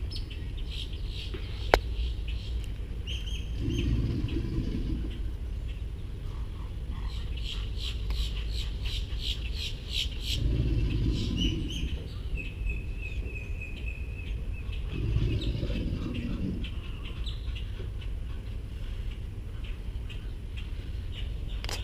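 American alligators bellowing: three deep, low bellows of about a second and a half each, spaced several seconds apart, a breeding-season display. Birds call over them throughout, with a quick run of chirps in the middle.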